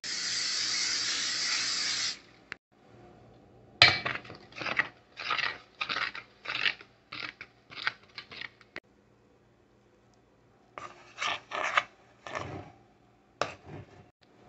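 A metal utensil stirring a stiff flour, water and chocolate-syrup batter in a stainless steel pot: scraping strokes about two a second, in two runs with a pause between. A steady hiss fills the first two seconds and cuts off abruptly.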